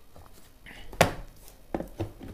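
Plastic electric kettle body handled and set down upright on a wooden workbench: a sharp knock about a second in, then a lighter knock under a second later.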